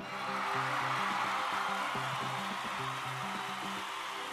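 LVM3-M4 rocket's twin S200 solid boosters igniting at liftoff: a steady rushing roar that starts at once and eases a little. It is heard over background music with sustained low notes.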